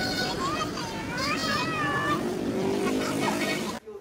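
Street noise with traffic and a person's voice talking over it, cutting off abruptly near the end to a much quieter room.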